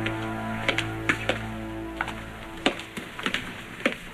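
Soft soundtrack chords fading out over the first two seconds, under sharp clicks about every half second: footsteps on a hard floor.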